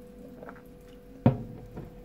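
Glass drink bottle set down on a hard tabletop: one sharp knock a little over a second in, with a faint handling sound before it.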